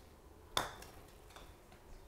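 A putter strikes a golf ball once, a sharp click about half a second in, followed by two faint ticks as the ball hops on the turf mat. The putt is struck with severe forward shaft lean, which de-lofts the face so that the ball bounces instead of rolling.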